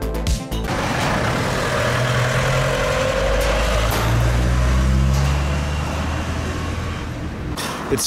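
Background music cuts off about half a second in, then a large truck passes close by: engine rumble and tyre noise swell to a peak mid-way and fade, with a falling whine early in the pass.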